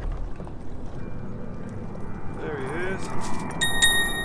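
Light clicks and rattles of a small calico bass being unhooked by hand, with a brief voice a little past the middle. Near the end, a bright ringing chime sounds for about half a second.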